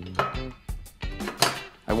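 Background music with light metallic clinks of powder-coated steel parts knocking together as the bandsaw table's girdle is set onto its steel top.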